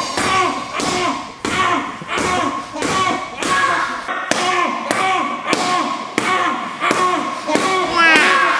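Boxing-glove punches landing on a bare stomach in quick succession, over a dozen at about two a second, each thud followed by a short pitched sound.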